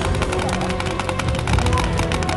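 Background music with a fast rattle of paintball markers firing, many shots a second.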